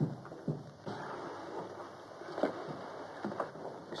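Soft footsteps and scuffing on a floor: a few light knocks, one of the loudest about two and a half seconds in, over the steady hiss of an old film soundtrack.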